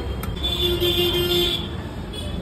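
A vehicle horn sounding one steady note for about a second, over the constant rumble of street traffic.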